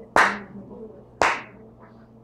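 Two loud, sharp hand claps about a second apart, with a short room echo after each, used to call a class to attention.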